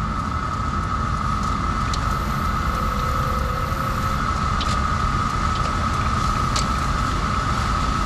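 Car driving on a rough road, heard from inside the cabin: a steady rumble of engine and road noise, with a steady high whine running through it.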